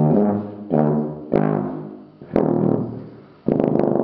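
Conn 48K sousaphone fitted with a King 1265 32-inch jumbo bell, playing a string of separate low notes, about four new ones, each starting sharply and dying away with the room's ring. The oversized bell pulls the instrument's pitch noticeably flat.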